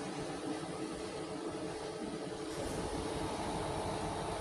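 Steady hum with a steady tone from a switched-on MultiPro MMAG 600 G-TY inverter welding machine idling with its cooling fan running. A deeper rumble and a second, higher tone join about three seconds in.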